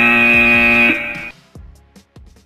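A loud held electronic tone, about a second long, that cuts off abruptly; it marks the switch from work to rest on the workout's interval timer. Sparse, fading music notes follow.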